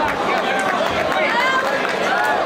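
Fight crowd shouting over one another, many voices at once yelling encouragement while the fighters grapple on the mat.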